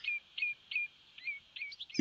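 A small songbird calling: a quick series of short, falling notes, roughly three a second.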